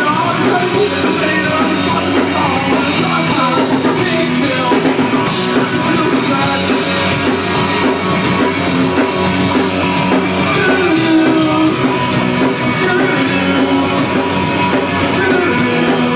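A live rock band playing: a man singing into a microphone over electric guitar and a drum kit, loud and without a break.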